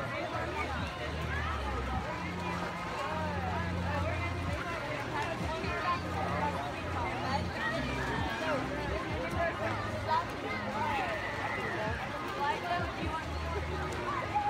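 Overlapping, indistinct chatter and calls of many voices, children's among them, with no single speaker clear.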